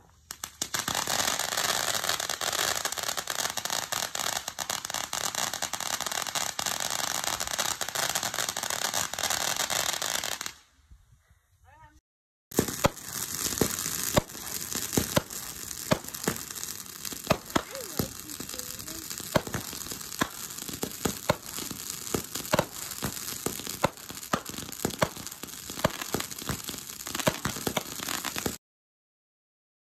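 Fireworks crackling: a dense, continuous crackle for about ten seconds, then after a brief break, sparser crackling with many sharp pops.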